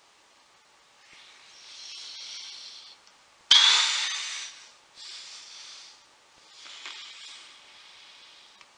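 A man breathing out in long, heavy sighs, four of them. The second starts suddenly and is the loudest.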